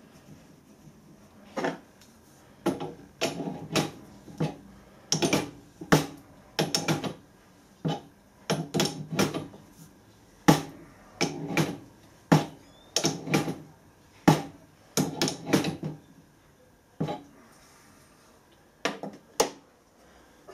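Irregular metallic clinks and knocks of steel fittings and a hand tool against a brass pressure gauge's threaded inlet as a PTFE-taped parallel fitting is screwed in and tightened, with a short pause near the end.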